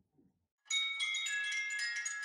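A bright chiming jingle of many overlapping bell-like notes, like wind chimes or a glockenspiel, starting suddenly less than a second in and ringing on with fresh notes struck every fraction of a second; an edited-in sound over a title card.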